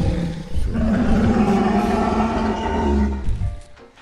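Animated Tyrannosaurus roaring in the Monster Park AR iPhone app: one roar ends about half a second in, then a second long, deep roar runs for about three seconds before dying away. The roar is the dinosaur's angry reaction to being touched on the screen.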